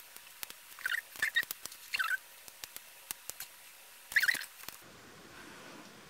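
Small handling sounds of wick tabs on sticky pads being peeled and pressed into scallop shells: faint scattered clicks and a few short squeaks, about four over the few seconds.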